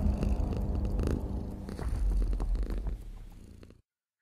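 A cat purring, a low rumbling sound that fades out shortly before the end.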